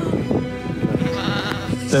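A sheep bleating once about a second and a half in, over background music that has steady held notes and rapid percussive taps.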